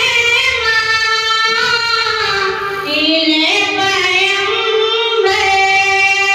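A high female voice singing a naat, an Urdu devotional song in praise of the Prophet, drawing the words out into long held notes with slow ornamented turns in pitch. The voice dips and climbs about halfway through, then settles on a new long note near the end.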